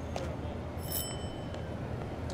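A shop-door bell rings once, briefly, about a second in as the door is opened, with several high, clear tones, over a steady low street hum.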